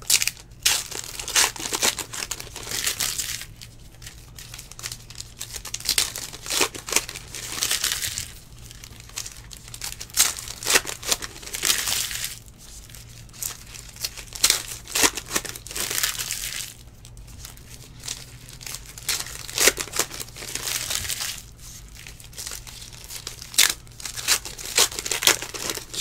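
Foil trading-card pack wrappers being torn open and crumpled by hand, in repeated crinkling bursts with short pauses between.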